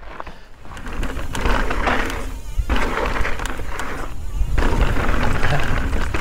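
Mountain bike riding over a dirt trail: heavy wind and tyre rumble on the bike-mounted camera, with a steady buzz that thins out twice, typical of a rear hub freewheeling while coasting.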